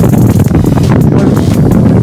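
Loud, gusty wind rumble on a phone microphone from a moving motorcycle, with the bike running underneath and background music mixed in.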